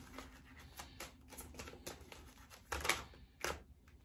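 Tarot cards being handled and shuffled in the hands: a run of light card flicks and snaps, with a couple of sharper ones about three seconds in.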